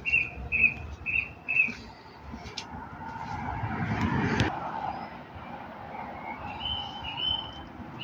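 Small birds chirping: a quick run of four short high chirps at the start, and a few more calls near the end. In between, a rush of noise builds over a couple of seconds and cuts off sharply about halfway through.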